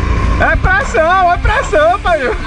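A high voice calling out in wavy, sing-song tones without clear words, over the low rumble of an ATV engine.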